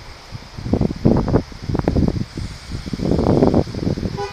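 Irregular rustling and crunching in uneven bursts, starting about half a second in, with a few sharp crackles in the middle and a denser stretch near the end.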